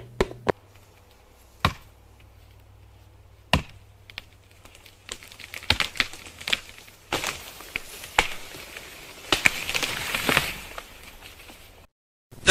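Axe chopping into wood: sharp strikes, a few widely spaced at first, then coming thicker and faster in the second half.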